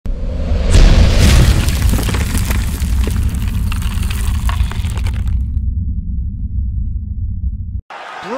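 Cinematic logo-intro sound effect: a deep boom about a second in, followed by several seconds of crackling, crumbling debris over a low rumble. The crackling stops after about five seconds and the rumble cuts off abruptly near the end.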